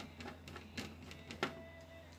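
Screwdriver working a metal mounting screw on a TV's power-supply board: a few irregular clicks and scrapes of the bit on the screw, the sharpest about one and a half seconds in.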